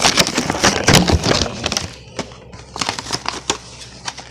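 Plastic blister packaging and cardboard of an action-figure box being pulled open and crinkled: a dense run of crackling and crunching for the first two seconds, then scattered clicks and crinkles.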